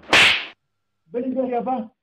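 One loud, sharp slap of a hand on a man's head, dying away within half a second.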